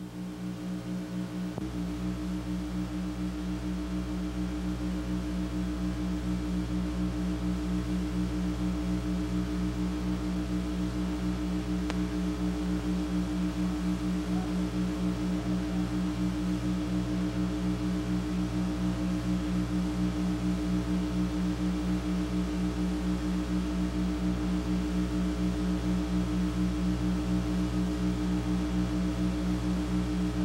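A steady low hum of several tones with a fast, even pulsing, swelling up over the first couple of seconds and then holding level.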